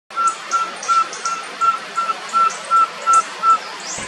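A pygmy-owl calling: an even series of about ten short whistled toots on one pitch, about three a second, with fainter high chirps from other birds behind it.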